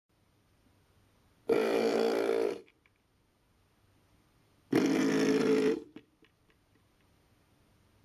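Two long burps, each lasting about a second, the first about one and a half seconds in and the second about three seconds later.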